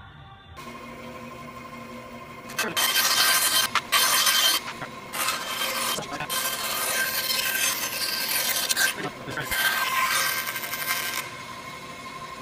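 Bandsaw running with a steady motor hum, then cutting through a workpiece from about two and a half seconds in: loud, noisy cutting in long stretches broken by brief pauses, stopping about a second before the end.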